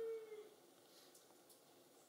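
Near silence: room tone in a pause of speech, with a faint steady tone that fades out about half a second in.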